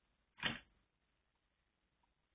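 Near silence, broken by one brief, soft noise about half a second in.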